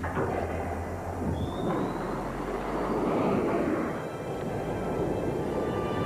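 Film soundtrack of a science-fiction spaceship: a dense rushing engine sound with a low hum underneath and a brief rising whine about a second in. Music with steady held notes comes in from about four seconds.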